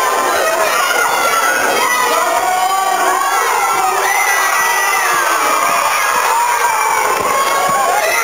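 A crowd of children shouting and cheering, many high voices overlapping without a break.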